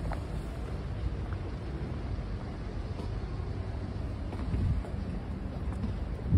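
Outdoor street background noise: a steady low rumble with wind on the microphone and a few faint soft knocks.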